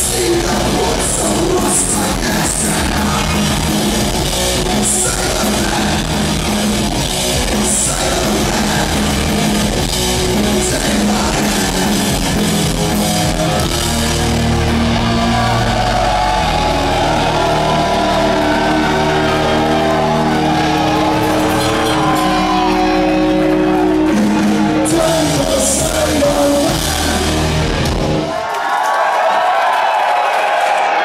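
Punk rock band playing live in a large hall: distorted electric guitars, bass, drums with cymbal crashes, and shouted vocals. The band stops sharply about two seconds before the end, leaving crowd noise.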